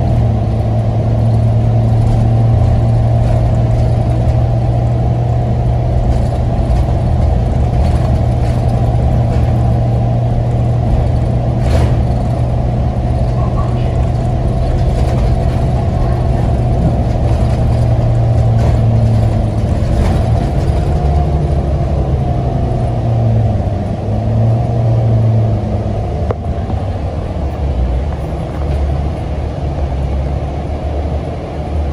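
Inside a NABI 42 BRT transit bus under way: the engine drones steadily over road rumble. In the last third the engine note drops and wavers as the bus slows.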